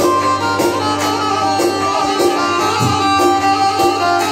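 Live Albanian wedding band playing traditional folk dance music loudly: a sustained melody line, fiddle-like in tone, over a steady drum beat of about two beats a second.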